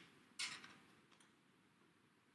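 Near silence at a game table, broken by a brief soft rustle about half a second in and a faint tick a little later, from board-game cards and pieces being handled.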